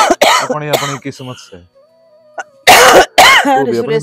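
A woman coughing hard in two bouts, the second starting near the middle, with strained voice sounds between the coughs.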